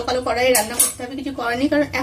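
Metal cookware clinking as a karai and utensils are handled, with one sharp clink about half a second in. A woman's talking runs over it.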